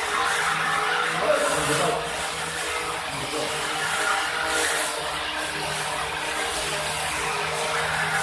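Corded handheld power tool grinding bare concrete along the edge of a floor, a steady motor hum with rough grinding noise that rises and dips slightly as it is worked.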